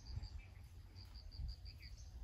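An insect chirping in a high, steady pulse, about six or seven chirps a second, stopping for about half a second and then resuming. A few short bird chirps come over a faint low rumble.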